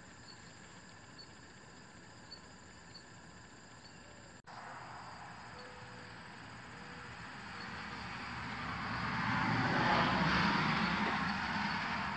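Faint, regular high chirps like a cricket's, about one every half second. Then a passing vehicle's steady rushing noise swells over several seconds and is loudest near the end.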